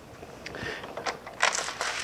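Lower sash of a double-hung window being unlatched and tilted inward by hand: a light click about half a second in, then scratchy rubbing and clatter that is loudest near the end.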